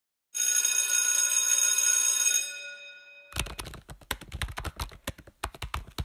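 School bell ringing: a steady electric ring that stops about two and a half seconds in and dies away. From about three seconds in comes a quick, irregular run of clicks and knocks.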